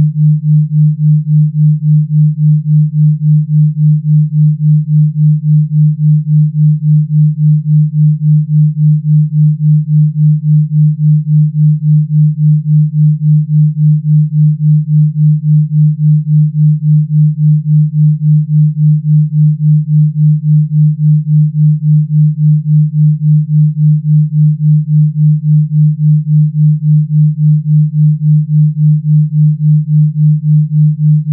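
Electronically generated low sine tone, a Rife frequency, held steady at one pitch and pulsing evenly in loudness a few times a second.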